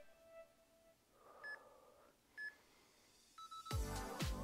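An electronic interval timer beeps twice, short and high, about a second apart, then gives a longer, lower beep near the end, marking the end of a 30-second work interval. Loud background music comes back in right after.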